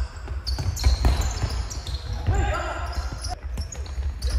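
Futsal match play on an indoor hall court: the ball being kicked and bouncing off the floor in sharp knocks, with short high shoe squeaks, echoing in the hall. Players shout partway through.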